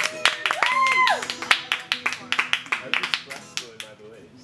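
Small audience clapping at the end of a song, the claps thinning out toward the end, with one brief high whoop rising and falling about a second in.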